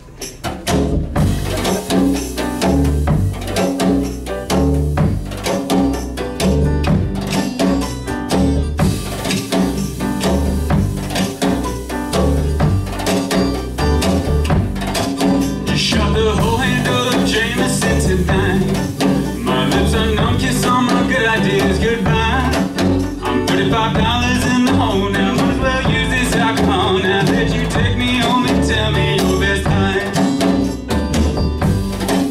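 Live band playing a song on acoustic guitar, upright double bass, piano and drum kit, with a steady drum beat under a full low end. A brighter high shimmer from the kit joins about halfway through.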